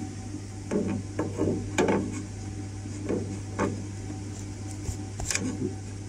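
Handling noise from a metal switch module (line card) being picked up and lined up with its slot in an HP ProCurve switch chassis: a series of short knocks, clatters and rubs of metal and circuit board. A steady low hum runs underneath.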